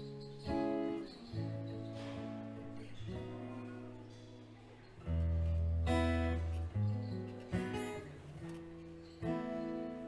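Solo acoustic guitar playing a slow instrumental introduction: chords struck and left to ring, a new chord every one to two seconds.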